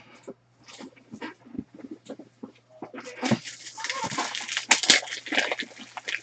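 Trading cards and foil pack wrappers being handled: soft clicks, taps and rustles, sparse at first and busier from about halfway, over a faint steady low hum.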